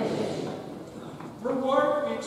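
Speech: a group of voices speaking together trails off, then a single voice starts about one and a half seconds in.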